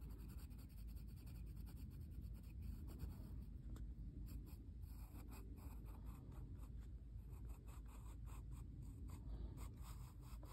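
Pencil point scratching on drawing paper in many short, quick shading strokes, faint, over a low steady hum.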